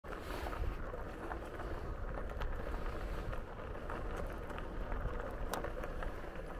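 Wind rumbling on the microphone of a camera riding along on a RadRover 5 electric fat-tire bike, over the steady hiss of tyres rolling on a dirt trail, with scattered small clicks and rattles.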